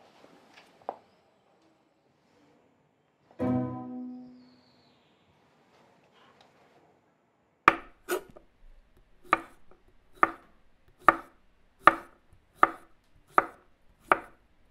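Kitchen knife slicing a courgette on a wooden chopping board: a steady run of sharp chops, a little more than one a second, starting about eight seconds in. Earlier, one low string note swells and fades about three and a half seconds in.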